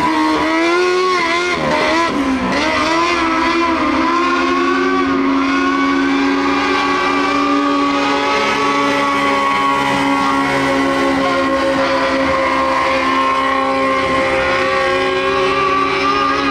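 Mini Late Model dirt race car engine running hard at speed on the track. Its revs dip and rise a few times in the first few seconds, then hold steady and high.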